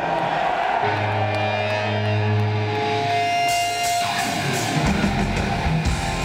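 Amplified electric guitar playing the opening of a heavy metal song live through a concert PA, with long held, ringing notes; a fuller, lower sound joins near the end.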